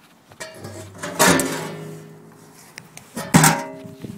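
Loose sheet-metal hood of a Gravely 430 garden tractor being lifted off, with two sharp metallic knocks, one about a second in and one near the end. Each knock leaves the panel ringing in several sustained tones that fade slowly.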